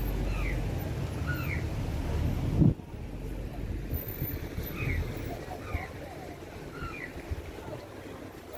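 Busy street ambience. A low rumble that cuts off suddenly about a third of the way in, and short high chirps repeating every second or so, some of them paired.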